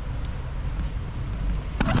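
A steady low rumble with a light hiss over it, without any clear pattern or distinct events; a man's voice comes in near the end.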